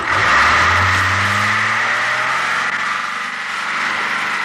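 Star 244 fire truck's diesel engine running as the truck drives through wet sand and mud, a low engine note from about a second in under a loud rushing noise of the tyres churning the ground.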